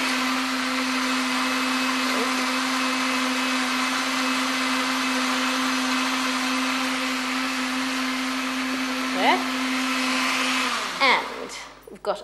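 Countertop electric blender running steadily, puréeing strawberries into a drink mixture, then switched off near the end.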